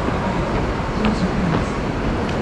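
Steady, dense outdoor background noise with faint voices and a few small clicks in it.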